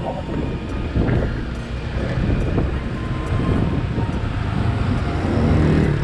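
Wind rushing over the microphone of a moving motorbike, over a steady low rumble of engine and tyres on the road. An engine grows a little louder near the end.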